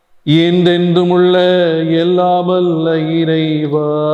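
A priest's voice chanting a liturgical prayer on one steady held pitch through the church microphone, starting about a quarter second in after a brief pause.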